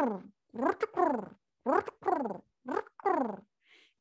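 A woman imitating a rock pigeon's display coo with her voice: a series of four falling coos, each about half a second long and about a second apart. The display coo is the male's courtship call, given while he bows and spins to attract a female.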